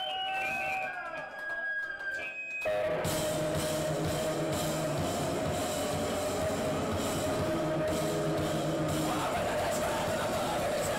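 Noise-punk band playing: a few held, sliding tones, then about three seconds in distorted electric guitars, bass and drum kit come in all at once as a loud, dense, steady wall of sound.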